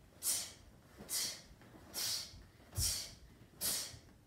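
Five short, sharp hissing exhalations about a second apart, a karate student breathing out forcefully with each punch. There is a faint thud under the last two.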